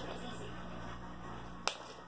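Low steady room hum, then a single sharp click near the end as a partly filled plastic water bottle is swung behind the back and flung in a bottle flip.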